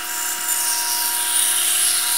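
Bandsaw running with its blade cutting through the wall of a large cardboard tube: a steady tone with a strong high hiss.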